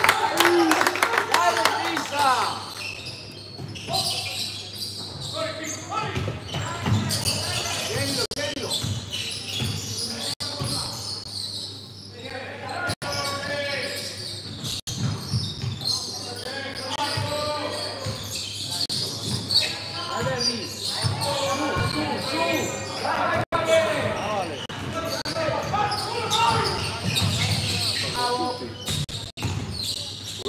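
Basketball bouncing on a hardwood court during live play, with repeated short knocks of the ball in a large gym hall, amid players' and spectators' voices.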